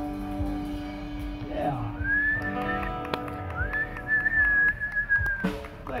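The final guitar chord of an acoustic band's song rings out and fades, then a person whistles loudly twice in approval, two long steady high whistles that rise at the start, the second longer.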